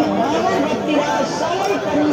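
Several people talking at once: overlapping chatter of a crowd at a busy outdoor market.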